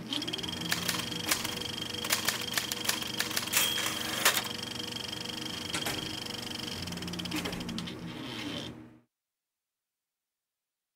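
Typewriter keys clacking in irregular strikes, the loudest a little past four seconds, over a steady low hum and a faint high tone; it all stops about nine seconds in.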